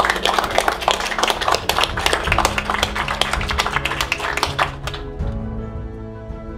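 A group of people applauding by hand, the clapping dying away about five seconds in, over soft background music.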